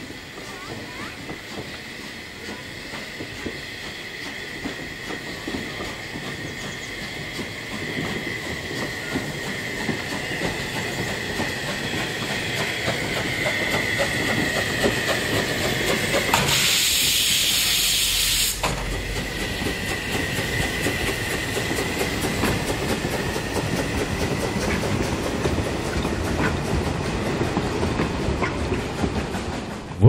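Narrow-gauge steam train, locomotive 99 4511 and its passenger coaches, rolling past and growing louder: wheels clicking over the rail joints, with a steady high-pitched ring from the wheels. Loud hiss of steam for about two seconds a little past the middle.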